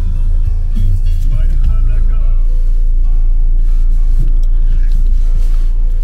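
Steady low rumble of a car's engine and tyres heard inside the cabin, under background music.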